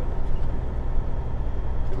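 Steady low drone of a semi truck's diesel engine and road noise heard inside the cab while driving on the highway.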